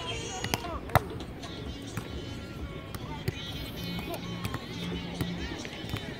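Volleyball struck by hand in a beach rally: one sharp smack about a second in, then a few lighter hits, over voices and music.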